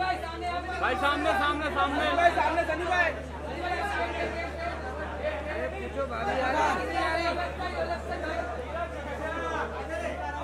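Chatter of several people talking and calling out over one another, with a steady low hum underneath.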